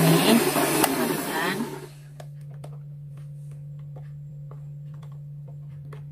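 Electric hand mixer beating thick cake batter in a bowl, loud for about the first two seconds. The level then drops sharply to a steady low hum with a few light clicks.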